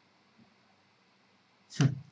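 Near silence, then near the end a brief, sharp vocal sound from a man, a short breath or syllable.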